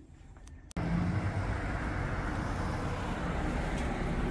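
Steady outdoor street noise with road traffic, starting suddenly about a second in after a brief near-quiet moment.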